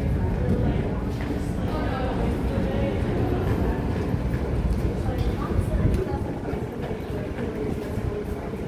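A steady low rumble with faint voices of people in the background; the rumble eases slightly about six seconds in.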